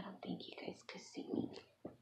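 A woman's quiet, whispered muttering.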